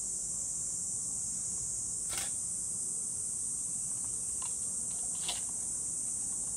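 Steady high-pitched drone of a summer insect chorus, with two faint clicks, one about two seconds in and one near the end.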